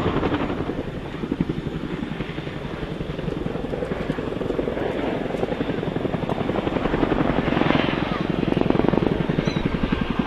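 RAF CH-47 Chinook's twin tandem rotors beating with a rapid, even chop as the helicopter flies past, dipping slightly early on and growing louder again near the end.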